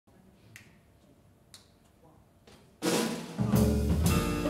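Near-quiet room for almost three seconds, with two faint clicks about a second apart. Then a jazz band comes in loud all at once: a drum kit crash, followed half a second later by double bass and piano.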